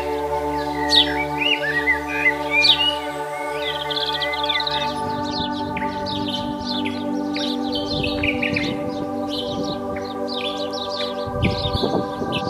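Ambient music of steady held tones, with small birds chirping over it: a few separate sharp chirps at first, then busy twittering from about four seconds in.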